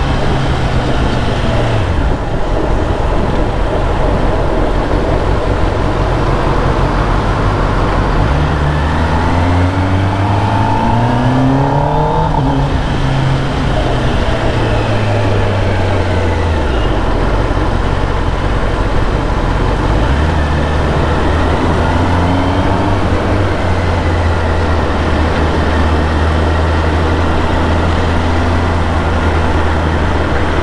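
Kawasaki ZX-10R's inline-four engine, still on its stock exhaust, heard from the rider's seat while cruising, with steady wind rush over it. The engine note dips in the first couple of seconds, then climbs as the bike accelerates around ten to twelve seconds in. It falls back off and holds a steady low drone for the last ten seconds.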